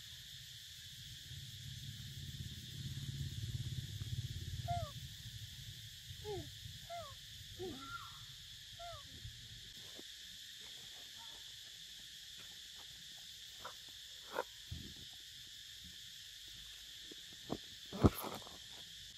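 Steady high-pitched drone of insects, with a low rumble in the first few seconds. Between about four and nine seconds in there is a run of short animal calls, each sliding in pitch, followed by a few sharp clicks near the end.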